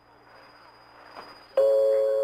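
Shortwave radio reception of Radio Berlin International: faint hiss and static, then about one and a half seconds in a loud, sustained electronic keyboard note comes in abruptly, the start of the station's interval signal between programmes.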